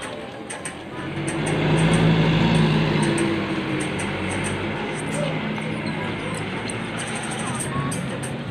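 A minivan driving past close by on the street, its engine and tyres growing loudest about two seconds in and then easing off.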